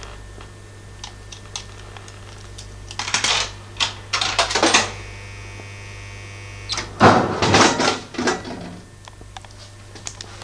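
Coca-Cola vending machine working: a few seconds of rattling clatter, a short steady whir from the mechanism, then, after a selection button is pressed, a loud heavy clunk and clatter as a can drops down the chute. A steady electrical hum runs underneath.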